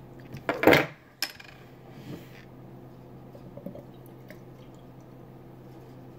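Metal clatter of a bottle opener and bottle cap set down on a table just after a glass beer bottle is opened, followed by a single sharp click. After that, only faint handling sounds as the beer starts to pour quietly into a glass.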